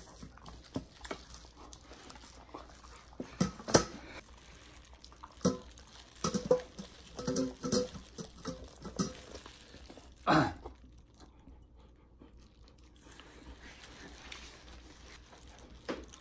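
A Samoyed eating boiled chicken from a stainless steel bowl: wet chewing and licking with scattered sharp clicks, alongside gloved hands pulling apart the boiled chicken. A throat-clear comes about ten seconds in.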